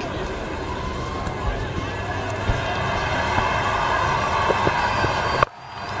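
Steady background noise of the cricket ground picked up by the broadcast microphones, swelling slowly as the ball is bowled and hit, with a soft low thump about a second and a half in. It cuts off suddenly near the end.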